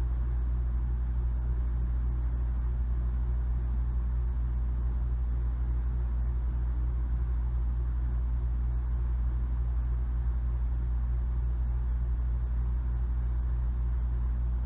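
Steady low hum and rumble with a lighter hiss above it and no other events: the recording's constant background noise while no one speaks.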